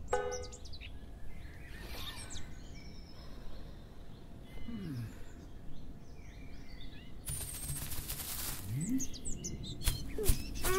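Birds chirping now and then over a steady outdoor background hiss, with a louder rush of noise lasting about a second late on.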